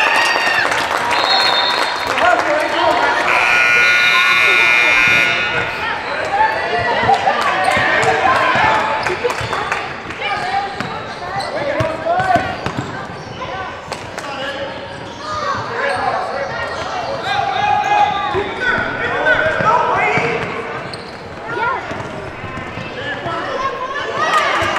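Youth basketball game in a gym: a short high whistle blast about a second in, then a scoreboard buzzer sounding for about two seconds, followed by a basketball being dribbled on the hardwood floor under continual shouting from players and spectators.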